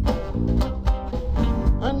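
Live blues band playing between sung lines: strummed acoustic guitar over a steady low beat, with the singer's voice coming in at the very end.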